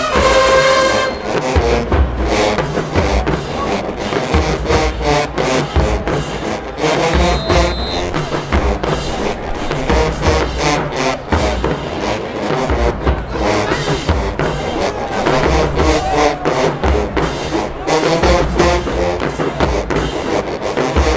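Marching band playing in the stands: brass and sousaphones over a heavy, steady bass-drum beat.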